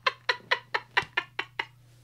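A man's helpless laughter, a quick run of short breathy pulses about six a second that fade away and stop before the end.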